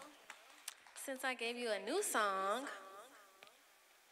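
A woman's voice over a microphone, a few drawn-out vocal sounds between about one and three seconds in, then a quiet stretch near the end.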